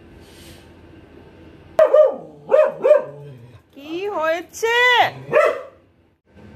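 A small dog barking, about six short, high yelping barks starting about two seconds in.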